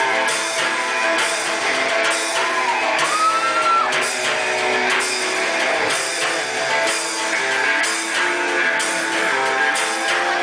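Live rock band playing a song, guitar over a steady beat, with a high tone gliding up and back down about three seconds in.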